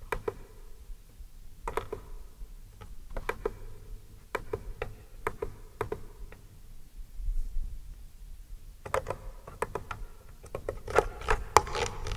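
Irregular clicks and taps from a vocal harmony pedal's buttons and controls being pressed and turned as its settings are re-entered. They come a few at a time with gaps, grow busier near the end, and sit over a faint low hum.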